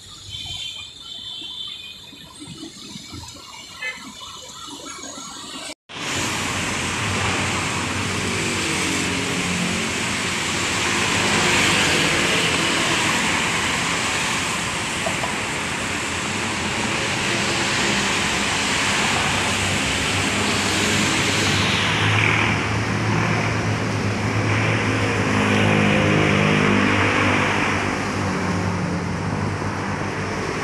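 Road traffic: a steady wash of tyre noise and engine hum from passing vehicles, loud after a sudden cut about six seconds in, with quieter traffic sound before it.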